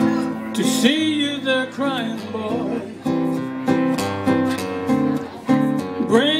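Acoustic guitar strummed and picked through a slow run of chord changes. A man's voice comes in briefly about a second in and again right at the end.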